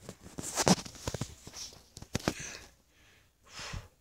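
Close handling noise of soft toys near the microphone: irregular rustling with small knocks and clicks, and a short breathy puff a little after three and a half seconds.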